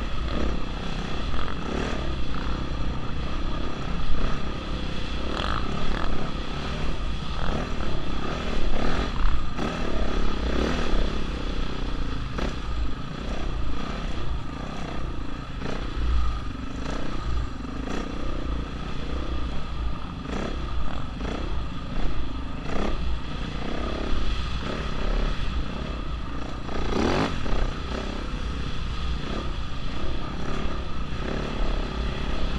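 Dirt bike engine running under load on a sandy track, its revs repeatedly rising and falling as the throttle is worked.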